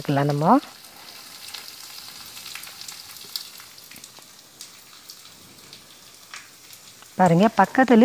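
Garlic and curry leaves frying in ghee in a small kadai for a tempering: a faint steady sizzle with scattered fine crackles.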